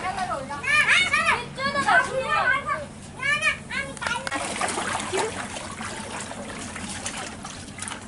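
A child's high-pitched voice in quick bursts with rising and falling pitch over the first few seconds, then fainter splashing of feet wading through shallow floodwater.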